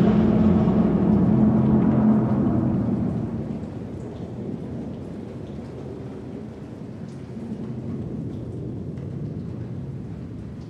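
Dark ambient recording closing on storm sound effects: a loud, low thunder-like rumble with droning tones fades away over the first three seconds. It leaves a steady hiss of rain with faint scattered drips.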